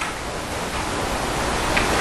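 Steady hiss of background noise, with no speech, in a lecture-room recording.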